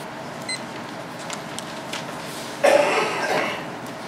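A person coughing once, a sudden loud cough about two-thirds of the way in that dies away over about a second, over steady room noise. A brief high beep sounds about half a second in.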